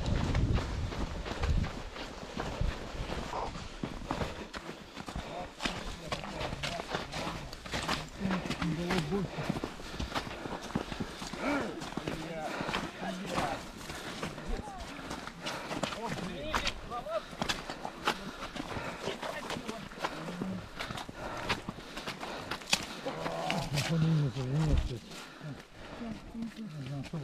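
Footsteps crunching and scuffing in snow on a steep climb, with the heavy, voiced breathing of an exhausted runner close to the microphone.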